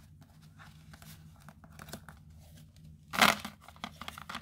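Tarot cards being handled on a table: soft sliding and rustling of cards, with one louder, brief burst of card noise about three seconds in.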